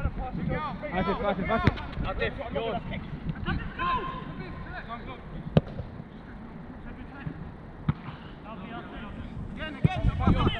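A football being kicked: a few sharp thuds of the ball being struck, the loudest about five and a half seconds in and another near eight seconds, under distant shouts and calls of players, which fade after about four seconds.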